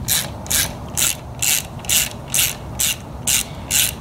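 Socket ratchet wrench being worked back and forth to back out a shifter bolt on a T56 transmission, its pawl clicking in a short burst on each return stroke, about two to three strokes a second.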